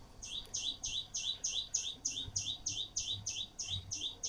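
A small bird chirping over and over at a steady pace, about three short rising chirps a second.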